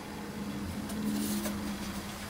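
A faint, steady low hum, with a second tone just above it, that fades near the end.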